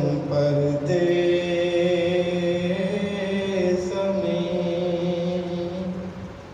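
A man's voice chanting a Muharram mourning lament solo, in long, drawn-out held notes that shift pitch about a second in and again near four seconds.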